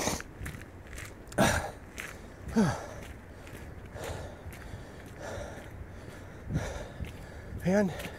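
A man breathing hard while walking briskly on a trail: a few short voiced exhalations, falling in pitch, about one and a half and two and a half seconds in and again later, over footsteps and phone-handling noise.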